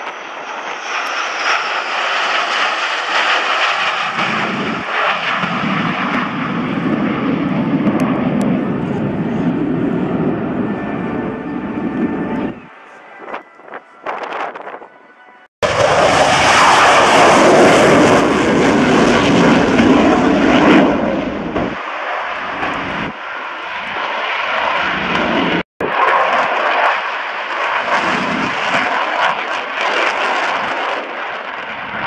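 Military jet engines: a formation of three twin-engine fighter jets passing overhead, then a Eurofighter Typhoon taking off low, the loudest part. The sound breaks off abruptly a few times between passes.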